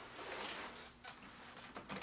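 Faint handling sounds of hands lifting off one keyboard and settling onto a split ergonomic keyboard, over quiet room tone. The sounds fade after about a second.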